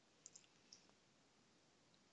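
Near silence with a few faint computer mouse clicks: two close together about a quarter of a second in, and one more shortly after.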